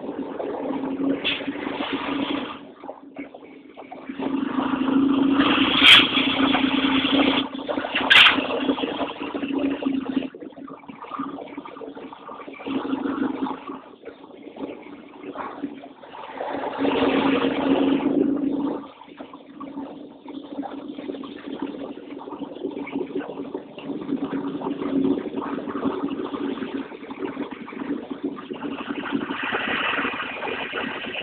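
Engine of a slowly moving vehicle running steadily, with two louder stretches and two sharp clicks about six and eight seconds in.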